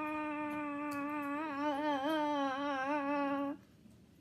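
A child's voice holding one long sung or hummed note, steady at first, then wavering up and down before cutting off suddenly about three and a half seconds in.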